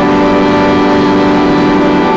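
Organ music during the offertory: a chord held steadily, moving to a new chord right at the end.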